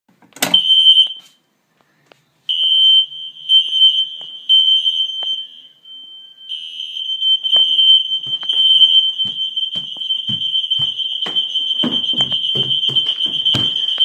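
A fire alarm pull station is pulled with a sharp click, and a battery-powered electronic fire alarm sounds a single high-pitched tone. The tone gives a short blast, falls silent, gives three beeps, then holds a continuous tone with handling knocks over it. Its erratic pattern is what the owner puts down to low batteries.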